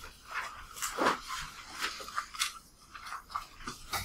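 Irregular light clicks and rustling, a few each second.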